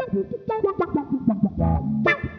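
Electric guitar played through a GFI System Rossie filter pedal: a quick run of funky plucked notes, each with a filter sweep that bends its tone.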